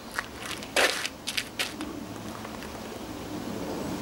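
Feet scuffing and stepping on gritty asphalt during karate kata footwork: a quick run of short scrapes in the first two seconds, the loudest a little under a second in, then only steady background hiss.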